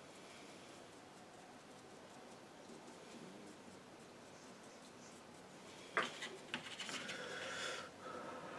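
Faint strokes of a flat watercolour brush on smooth hot-pressed paper as reflections are laid in. About six seconds in comes a sharp knock, then a couple of seconds of louder rubbing and scraping.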